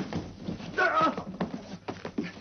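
Scuffling struggle with scattered knocks and thumps. A shrill, strained cry comes just under a second in and lasts about half a second.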